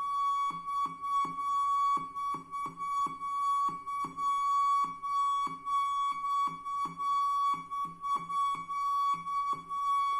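Braided steel flexible water hose feeding a toilet cistern singing a steady high tone from water flowing through it. As the hose is flexed by hand, a rhythmic run of short lower notes, about three a second, sounds over it, tapping out a football chant.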